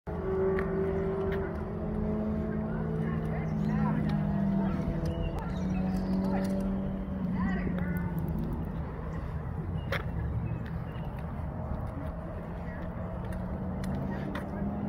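A steady engine or motor hum, held on one low pitch that shifts slightly now and then, with faint voices in the background.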